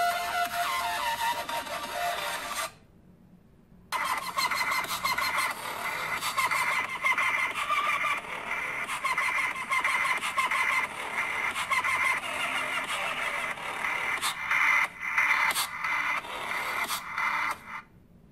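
Electronic dance music played through the Xiaomi Redmi Note 4 smartphone's small loudspeaker, thin with almost no bass. It breaks off for about a second roughly three seconds in, then carries on.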